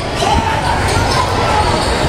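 Basketball game in a large gymnasium: a steady din of ball and court noise, echoing in the hall, with one drawn-out shout from a voice on the court through most of the moment.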